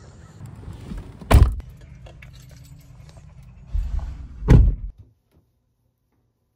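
Two dull thumps about three seconds apart over a low rumble, typical of a handheld phone's microphone being knocked and handled. The sound cuts off suddenly near the end.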